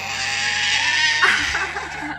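A 13-month-old baby's shrill, drawn-out squeal of laughter, its pitch jumping higher about a second in.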